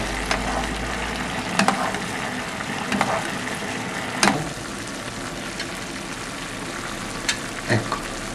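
Thick tomato sauce with pieces of stockfish cooking in a pan over a low gas flame, giving a steady sizzle, while a metal spoon stirs and bastes. The spoon clicks against the pan a few times.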